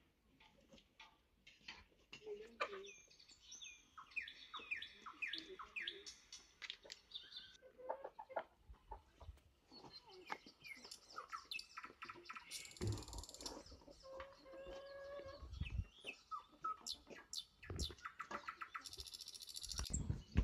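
Small birds chirping repeatedly in short, falling calls, faint, with soft clicks and rustles from dough pieces being handled on cloth.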